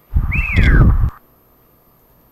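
A short meme sound effect: a whistle-like tone that rises briefly and then slides down in pitch over heavy bass, lasting about a second before cutting off.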